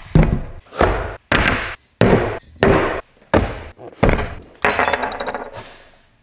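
A steady series of about nine heavy thuds, roughly one every two-thirds of a second, each dying away quickly, with a fast high rattle of clicks in the last couple of seconds.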